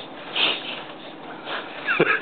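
Baby making short, high vocal sounds: a breathy squeal about half a second in and a gliding squeal near the end.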